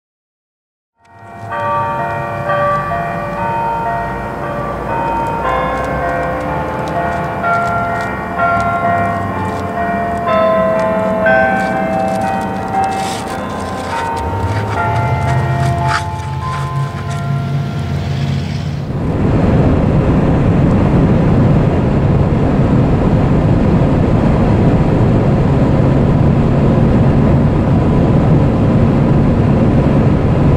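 Bells ringing a run of overlapping notes, starting about a second in. About two-thirds of the way through it cuts to steady road noise heard from inside a moving car.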